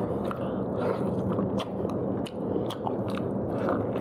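Close-miked biting and chewing of a pork leg, with irregular sharp clicks and smacks from the mouth over a steady chewing noise.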